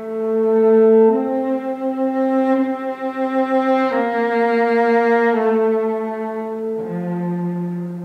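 Solo cello played with the bow: slow, sustained notes, the pitch moving every one to three seconds, with a lower note starting near the end.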